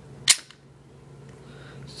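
Toggle action of a Denix Luger P08 replica pistol being worked by hand: a single sharp metallic click about a third of a second in.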